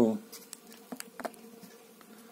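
Faint steady hum with a few light clicks and taps as a hand handles a magnetic model planet on a painted board.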